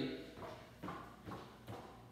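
Footsteps of a person walking on a hard tiled floor, about two steps a second, growing a little fainter as the walker moves away.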